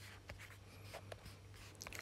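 Faint ticks and light rustles of a smartphone being handled and tapped, over a low steady hum.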